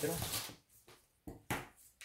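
Brief handling noises: two quick, sharp rustling clicks a little over a second in, from a tape measure being handled against the fabric.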